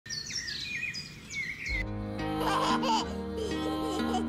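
Birds chirping and singing with quick sliding calls. About two seconds in, soft music with sustained chords starts, and a young child giggles over it.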